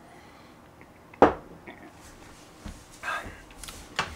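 A single sharp tap about a second in, over quiet room tone, with a faint short noise near the end.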